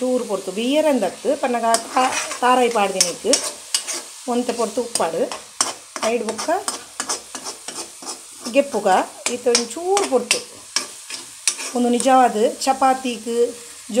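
A spatula stirs and scrapes diced potatoes in masala around a hot pan. The food sizzles, the spatula clicks repeatedly against the pan, and the scraping makes squeaks that waver up and down in pitch.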